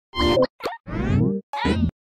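Animated TV ident jingle made of four quick cartoon sound effects, pitched plops and boings, the third sliding upward in pitch; it cuts off just before the end.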